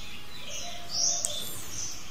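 Birds chirping: short high calls recur, with a rising call and a quick run of very high notes about a second in.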